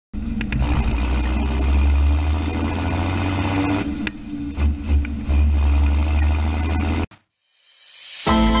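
A loud vehicle engine running with a high whistle that rises, falls and rises again, cutting off abruptly about seven seconds in.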